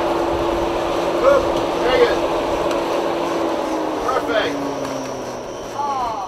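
A steady machine drone whose tone drops in pitch as it winds down near the end, with a few short shouted voices over it.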